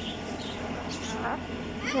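A cockatoo giving one brief, faint soft call about a second in, over quiet background.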